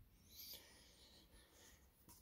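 Near silence: room tone, with a faint, brief rustle about half a second in, such as a hand moving a knife.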